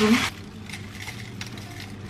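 Frozen spinach and purslane dropped by hand from a plastic bag into a plastic blender cup: a few faint light clicks and crinkles.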